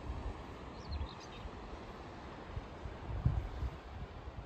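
Wind rumbling on the microphone in uneven low gusts on an open clifftop, with a bird chirping faintly a few times about a second in.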